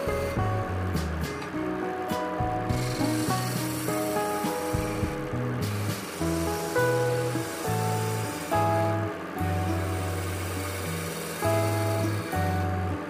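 Background music with a melody and a stepping bass line, over the scraping hiss of a hand chisel cutting a spinning bamboo piece on a wood lathe. The scraping breaks off briefly a few times.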